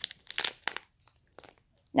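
Thin plastic zip-top bags crinkling in a few short rustles as they are handled, most of them in the first second, with a couple of fainter ones later.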